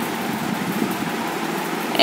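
Steady background noise: an even hiss with no distinct events.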